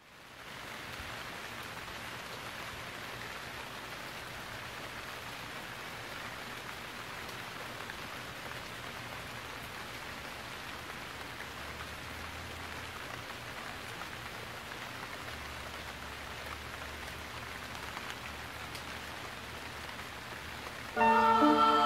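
Steady rain falling, an even hiss that fades in over the first second and then holds level throughout.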